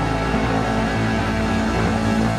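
Live electric blues band playing an instrumental passage: electric guitar over bass guitar and drum kit, played through amplifiers, with a steady, full sound.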